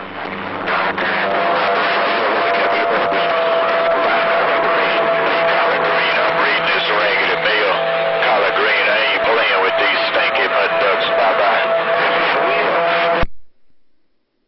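Magnum radio's speaker carrying a strong, garbled incoming transmission: loud noisy sound with a steady whistling tone running through it, unintelligible rather than clear speech. It cuts off suddenly about 13 seconds in, when the transmitting station unkeys.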